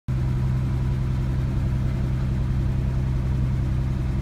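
Studebaker pickup truck engine idling with a steady low hum, heard from inside the cab.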